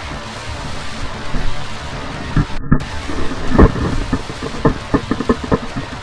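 A steady rumble of wind and tyre noise on a helmet camera under music, broken from about halfway by a string of sharp knocks and thuds as the mountain bike crashes on the dirt trail.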